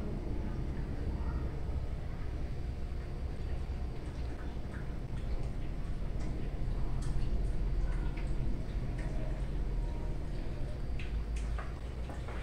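Steady low background hum with faint, scattered soft taps and rustles as slices of cheese are laid onto rolled-out bread dough, the taps mostly in the second half.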